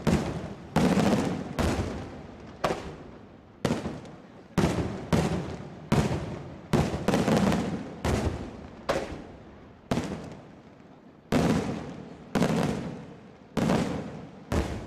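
Daytime fireworks display: aerial shells bursting in a steady run of loud bangs, roughly one a second, each trailing off in a rolling echo. There is a short lull a little past the middle before the bangs resume.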